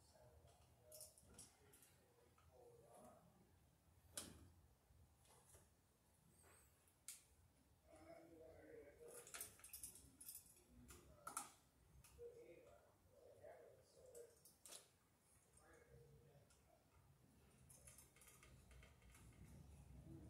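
Faint, irregular clicks and ticks of hand tools working electrical wire onto the screw terminals of an outlet.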